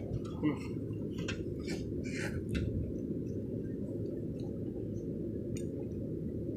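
Faint scattered clinks and taps, a few of them a little louder around two seconds in, over a steady low rumble.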